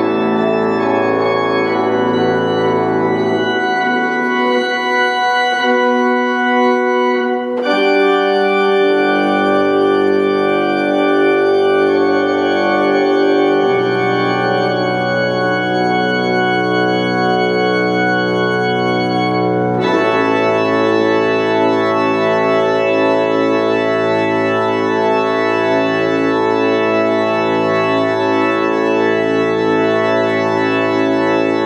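Church organ played from a three-manual console: full, sustained chords over low bass notes, the harmony shifting every few seconds, with clear changes about a third of the way in, near the middle, and about two-thirds of the way through.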